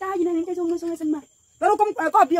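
A person's voice holding one long drawn-out vocal sound for about a second, then a quick burst of speech near the end. Underneath, a steady high-pitched insect chirring runs on throughout.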